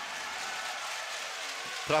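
Steady background noise of an indoor basketball arena crowd: an even hiss-like murmur with no distinct events.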